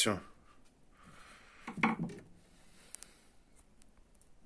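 Faint handling of a motorcycle fuel pump assembly in the hand: a soft rubbing hiss for about a second, a short vocal sound in the middle, and a single sharp click about three seconds in.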